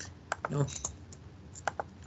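A handful of separate computer keyboard keystrokes, about five sharp clicks spread across two seconds, as notebook code is edited and the cells are run again. A single short spoken word comes in about half a second in.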